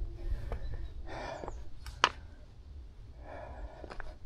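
A person breathing, with two audible breaths about a second in and near the end, and a few sharp clicks, the loudest about two seconds in.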